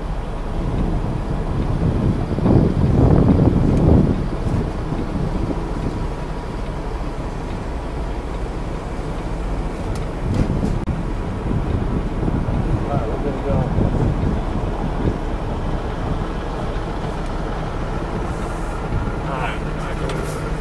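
Semi-truck diesel engine running at low speed in the cab during a slow backing manoeuvre, a steady low rumble that grows louder for a couple of seconds about two to four seconds in and swells a little again later.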